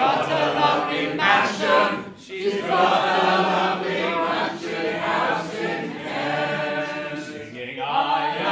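A roomful of voices singing a music-hall chorus together with the lead singer, with a short break about two seconds in and another near the end.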